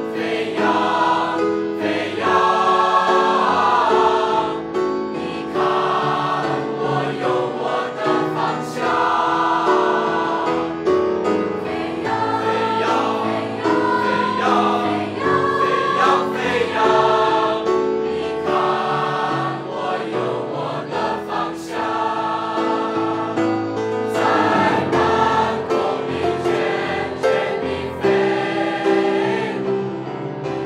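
A mixed choir of teenage boys and girls singing a Chinese art song in several voice parts at once, the notes changing about every second.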